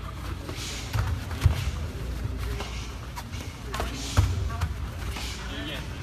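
Scattered thumps and slaps of a fast point-fighting exchange: feet shuffling and stomping on foam mats and padded kicks and punches landing, with voices in the background.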